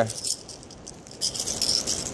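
A crankbait's rattles and treble hooks clicking and jangling in short bursts as the just-caught bass holding it is lifted and handled: once at the start and again, longer, in the second half.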